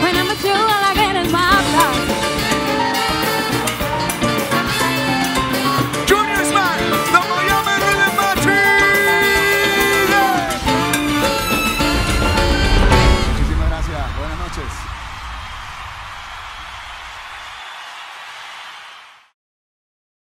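A live band playing upbeat Latin dance music with a male lead singer. The music ends about two-thirds of the way through, leaving a fading hiss that cuts off just before the end.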